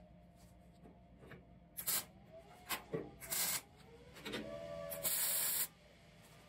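MIG welder tacking 1/4-inch steel plate: a few brief hissing bursts, then one steady, louder burst of under a second near the end that stops abruptly.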